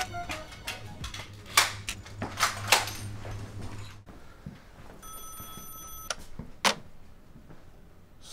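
A few sharp knocks over a low steady hum, then, after a short pause, an electronic ringing tone that holds steady for about a second, followed by one click.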